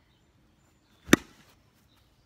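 Metal baseball bat hitting a tossed tennis ball: one sharp crack about a second in, with a brief ring after.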